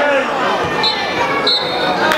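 Voices of players and spectators shouting around a football pitch, with a high steady whistle sounding in two short blasts, about a second in and near the end.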